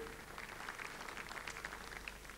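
Audience applause in a large hall, a steady, fairly faint patter of many hands clapping.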